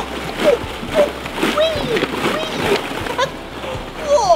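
Plastic ball-pit balls rustling and clattering as a person wades through them, with short wordless vocal sounds over the top.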